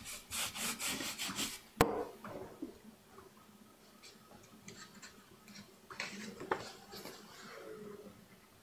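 A printing brush scrubbed rapidly back and forth over a carved wooden printing block, about five strokes a second, spreading pigment for a woodblock print. The strokes stop with one sharp knock about two seconds in, followed by quieter light handling sounds and small clicks.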